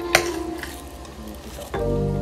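A single sharp tap just after the start, then faint rustling and handling noise as dumplings are wrapped by hand, with background music coming in loudly near the end.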